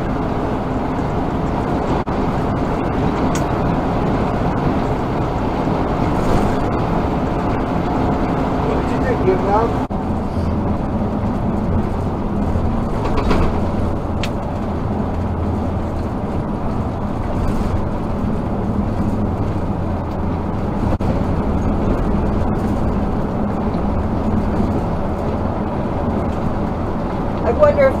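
Steady engine and tyre-on-road drone heard inside a vehicle moving at highway speed. The pitch of the drone shifts about ten seconds in.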